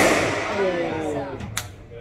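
A squash ball struck hard with a racket and cracking off the court walls: one sharp hit at the start, then rubber-soled shoes squeaking on the wooden floor in falling glides, and a second sharp crack about a second and a half in.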